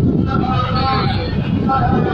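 Indistinct voices of a seated gathering over a steady low rumble.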